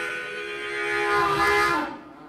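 Blues harmonica holding one long, loud wailing chord that bends down in pitch near the end, in the manner of a train whistle.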